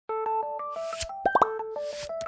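Short electronic intro jingle: a bouncy stepped melody, with a swelling whoosh ending in a click about a second in, followed by three quick upward-sliding pops.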